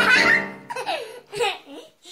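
Notes on an electronic keyboard, mashed by a small child's hands, fade out in the first half second. Then the young child laughs several times.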